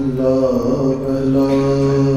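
Sikh kirtan: a man singing a slow, drawn-out line over the steady reedy tones of a harmonium, his voice sliding in the first half second and then holding a long note.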